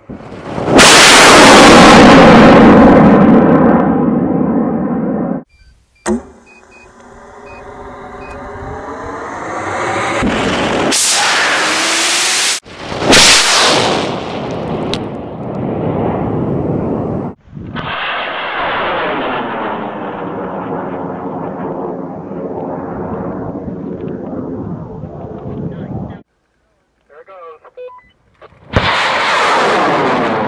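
Cesaroni O3400 98 mm solid-fuel rocket motor firing at liftoff. A loud roar starts abruptly about a second in and is loudest at first. It continues through several abrupt cuts as a long rushing rumble whose tones slide downward as the rocket climbs away.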